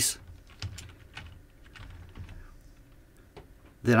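Computer keyboard keys tapped several times at an uneven pace, typing out a short word.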